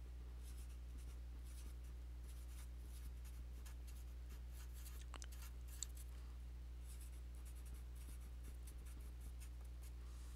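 Felt-tip marker writing on paper in short, faint strokes, over a steady low hum.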